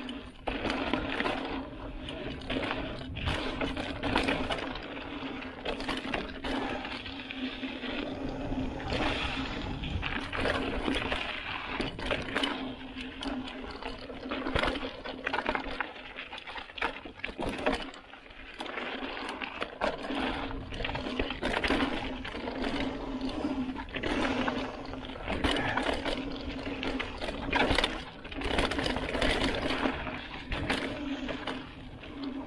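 Mountain bike rolling fast down a dirt singletrack: tyres crunching over the dirt, with frequent knocks and rattles from the bike as it hits bumps and rocks, and a steady buzz from the coasting rear hub. Low wind rumble on the handlebar-mounted camera's microphone.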